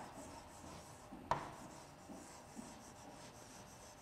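Faint stylus strokes rubbing across the glass of an interactive touchscreen board as a word is written, with a sharper tap of the stylus tip about a second in.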